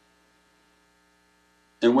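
Near silence with only a faint, steady electrical hum, then a man starts speaking again near the end.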